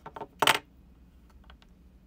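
A brief, sharp clink of small hard objects being handled, about half a second in, followed by a few faint clicks.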